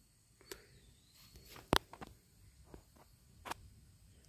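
Quiet stretch with a few scattered sharp clicks and taps, one much louder than the rest a little before the middle.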